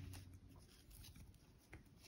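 Near silence, with faint rustling and scratching of a crochet hook and metallic tinsel yarn being worked through crocheted fabric.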